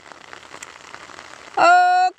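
A break between phrases of a Karma folk song, filled with a faint crackling hiss. About three-quarters of the way through, a singer's voice comes back in on a long, steady held note.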